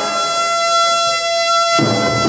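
Drum and bugle corps horn line holding one long sustained note, which breaks off near the end as the full ensemble comes back in.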